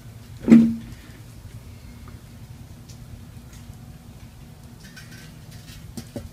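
The enamelled steel lid of a Weber charcoal kettle grill being handled and set over the grill: one short, loud knock about half a second in, then a low, steady background with a few faint clicks near the end as the lid settles.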